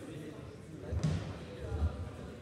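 Two dull low thumps, about a second in and again near the end, over a background murmur of voices in a large hall.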